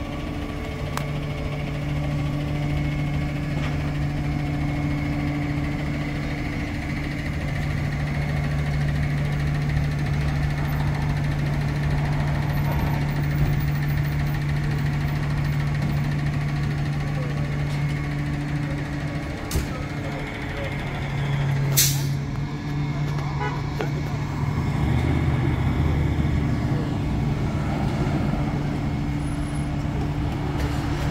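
A truck engine idling with a steady low hum amid street traffic, and a short sharp burst of noise about 22 seconds in.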